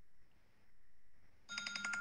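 A debate timer's electronic alarm starts about a second and a half in: a rapid, evenly repeating beeping at a steady pitch. It signals that a speaker's time is up. Before it there is only faint room tone.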